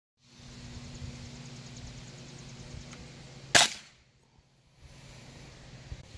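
A single shot from a .22 Norica Titan pellet gun, one sharp crack about three and a half seconds in, firing a flathead pellet. A steady low hum lies beneath it before the shot.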